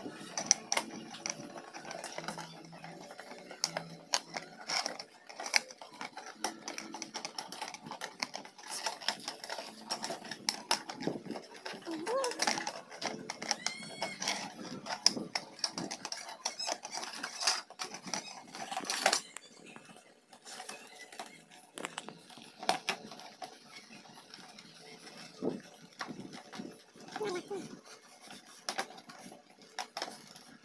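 Rigid plastic container and lid being handled: scattered sharp clicks and knocks of the plastic rim, with plastic film crinkling as it is peeled.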